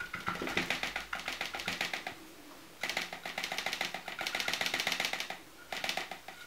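Paintbrush rapidly tapping and scrubbing on a wax-coated wood panel, a fast run of ticks about ten a second. It comes in two bursts, the second from about three seconds in, and a third begins near the end.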